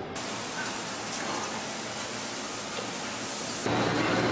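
A steady, even hiss of background noise with no clear source; near the end it gives way abruptly to a louder, deeper room noise.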